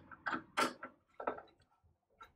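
Case fan being worked loose from a PC case: about five short plastic clicks and knocks in the first second and a half, then nothing much.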